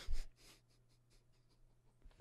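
A brief faint breath-like sound at the very start, then near silence: quiet room tone with a faint steady low hum.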